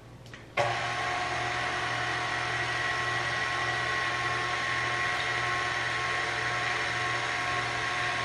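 KitchenAid stand mixer motor switching on about half a second in and then running steadily, driving the pasta roller attachment as a sheet of pasta dough is fed through on the first roller setting.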